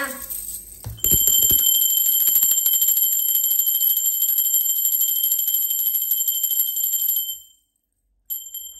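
Small brass hand bell shaken rapidly, its clapper striking many times a second in a continuous high ringing that starts about a second in and dies away about seven seconds in.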